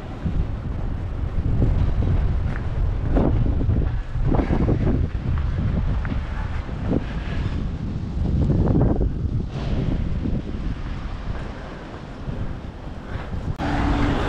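Wind buffeting the microphone: a loud, low rumble that swells and drops, with street traffic underneath.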